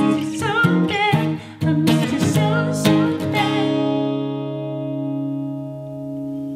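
Acoustic guitar strummed in chords with a voice singing over it; a little over three seconds in, the singing stops and a final chord is strummed and left to ring out, slowly fading.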